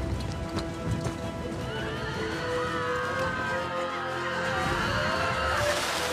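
Orchestral film score with layered battle sound effects: many overlapping gliding cries through the middle, like neighing, then a rushing burst near the end.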